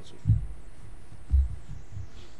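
Two dull, low thumps about a second apart.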